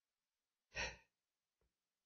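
A single short breath from the preacher near the microphone, a little under a second in; otherwise near silence.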